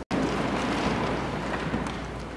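A brief dropout to silence, then a steady rushing noise with no clear pattern.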